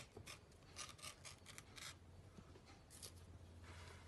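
Faint rubbing and scraping of a ribbon being pulled through a small hole in a clear plastic lid, in a few short strokes.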